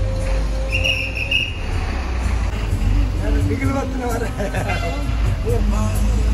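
A bus engine running with a steady low rumble, a short high-pitched tone about a second in, and people's voices over it in the second half.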